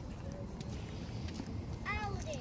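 Steady low outdoor background rumble. Near the end there is one brief, high-pitched vocal sound that falls in pitch.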